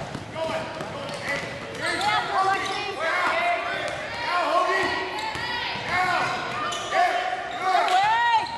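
Basketball shoes squeaking on a hardwood court in quick, repeated chirps as players run and cut, with a ball bouncing on the floor and voices calling out in the echoing gym.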